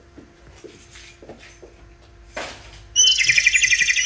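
Birds chirping in a quick run of loud, rapidly repeated high calls that start about three quarters of the way in. Before that there is only faint ambience with a few soft rustles.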